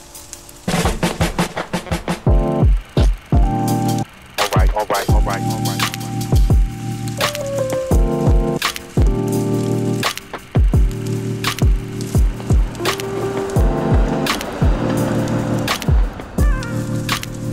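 Background music with a steady drum beat and held bass and chord notes, starting about a second in.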